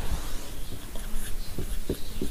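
Marker pen on a whiteboard: a few light taps and strokes in the second half as writing begins.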